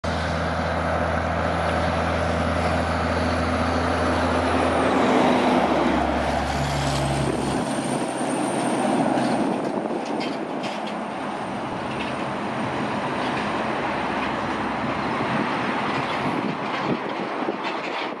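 Diesel road train with three side-tipper trailers approaching and passing: a low engine note that drops in pitch about five and again about seven seconds in, then the roar of many tyres and trailers rolling by, with scattered clatters and rattles, fading near the end.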